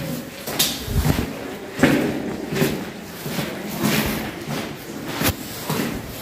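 Footsteps crunching and knocking on stony ground at an irregular pace of about one a second, echoing in a large cave chamber.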